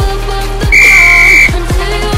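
A single loud, steady whistle-like signal tone lasting under a second, over electronic dance music with a steady beat. It is the workout's signal to start the next exercise.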